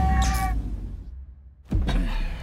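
Movie trailer sound design: a deep bass boom rings out and fades almost to silence, then a second sudden low hit lands near the end.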